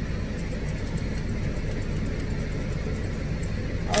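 A steady low mechanical hum, with a few faint light ticks over it.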